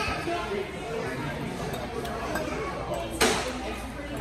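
Murmur of voices and dining-room noise, with one sharp clink of cutlery against a plate about three seconds in.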